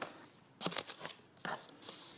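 Cardboard knife box being opened and its plastic tray slid out: a few short packaging rustles and clicks.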